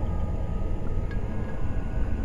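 Low, steady rumbling drone of a dark ambient horror sound bed, with a thin high tone held above it.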